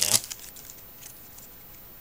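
Foil booster-pack wrapper crinkling briefly as it is torn open, then a quiet stretch with only faint rustles of the cards being handled.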